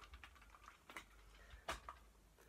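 Near silence with a few faint clicks and light taps as a toy monster truck is handled and set down. The clearest two come about a second in and near the end.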